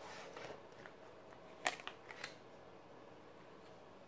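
Tarot cards being handled: a card drawn from the deck and laid on the table with soft rustling, then a sharp tap about a second and a half in and a couple of lighter taps just after.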